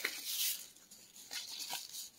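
Paper seed packets rustling and crinkling as they are handled. A burst of rustling comes in the first half second, then a couple of lighter rustles.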